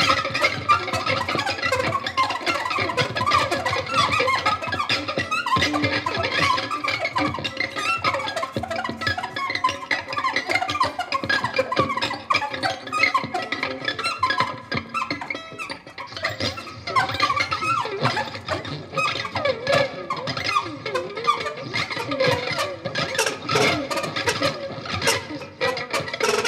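Saxophone and violin playing together in a live improvised duet: a busy, unbroken stream of short notes.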